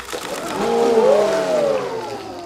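A polar bear dives into a pool, and a loud splash of water rises to a peak about a second in. Over the splash a long exclamation rises and then falls in pitch.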